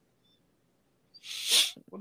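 A short, sharp burst of breath noise on a voice-chat microphone about one and a half seconds in, sneeze-like, after a second of near quiet.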